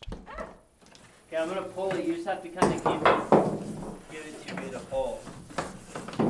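Yellow non-metallic electrical cable being pulled through a drilled hole in a wooden wall plate, with a few sharp knocks and rubbing noises in the middle, the loudest about three seconds in. An indistinct voice is heard faintly around them.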